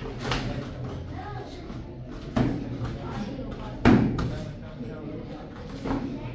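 Full-contact karate sparring: four sharp slaps of kicks and strikes landing on the body and gi, the loudest about four seconds in, over background voices in the dojo.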